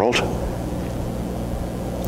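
A steady low hum with a light hiss behind it, holding at an even level.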